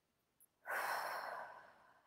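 A woman's deep breath let out as a sigh. It starts suddenly a little over half a second in and fades away over about a second.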